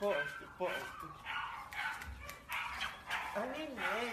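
A large American Bully dog vocalizing excitedly while jumping up to greet a woman, with her voice mixed in; a wavering pitched call starts near the end.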